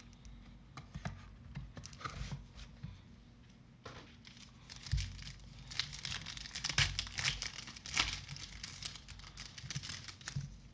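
A foil trading-card pack being torn open and crinkled by hand, loudest in a dense stretch of crinkling in the second half. Before that there is light handling of the pack and box with scattered clicks, and a soft thump about five seconds in.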